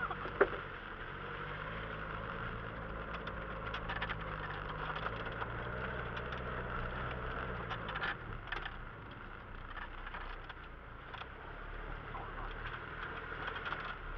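Off-road vehicle's engine running at low revs, heard from inside the cabin as it drives over rough dirt ground, the revs shifting a little around the middle and easing off after about eight seconds. A few sharp knocks and rattles from the body and suspension come through along the way.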